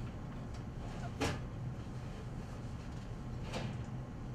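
Two sharp knocks as items and the rack are handled inside an open benchtop autoclave's metal chamber, the first about a second in and louder, the second near the end, over a steady low hum.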